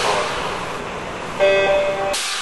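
Sound effects of a TV logo sting. A whoosh fades out, then about three-quarters of the way in a sudden pitched tone sounds, several notes held together, cutting off sharply.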